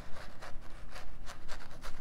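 Splayed bristle brush scratching and dabbing over a stretched canvas, a quick run of short dry strokes several times a second as it lays down paint in streaky lines.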